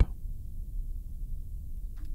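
A pause with no distinct sound event: only a low, steady rumble of background noise on the recording.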